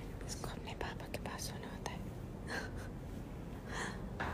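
Soft whispering in a few short, breathy bursts, with small clicks in the first two seconds.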